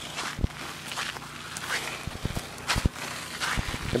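Footsteps scuffing and thudding irregularly on rocky, gravelly ground.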